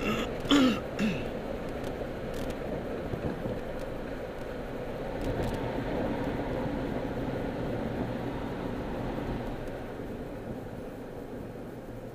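Steady road and engine noise heard inside a moving car's cabin, swelling a little midway and easing near the end. About half a second in, the driver clears his throat twice in quick succession.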